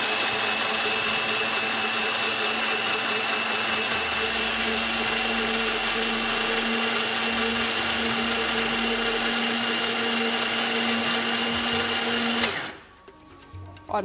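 Electric countertop blender running steadily at full speed with a constant high whine, blending milk, sugar and coffee into cold coffee. It cuts off suddenly about twelve seconds in.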